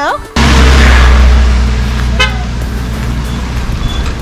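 A motor vehicle engine running close by. It comes in loud and suddenly about a third of a second in, then eases off slowly.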